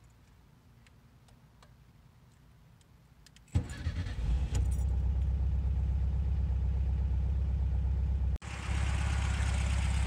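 1971 Volkswagen Super Beetle's air-cooled flat-four engine being started with the key: faint key clicks, then about three and a half seconds in the starter cranks briefly, the engine catches within about a second and settles into a steady idle.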